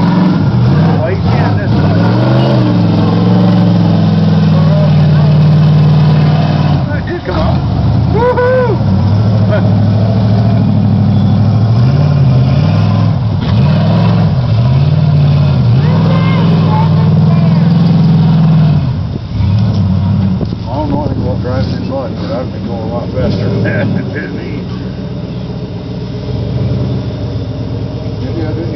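Big-block Ford V8 of a lifted half-ton pickup on 38-inch Swamper mud tires, revved hard again and again as it spins through deep mud, the pitch rising and falling with each surge. The revs drop briefly about seven seconds in, and the engine eases off and runs quieter after about nineteen seconds.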